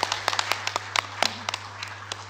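Audience applauding: many hands clapping unevenly at the close of a speech.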